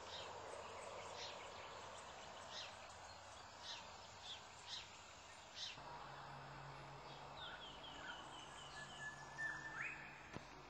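Faint outdoor ambience with birds chirping: scattered short calls, then a quick run of chirps about three-quarters of the way through, over a soft steady hiss.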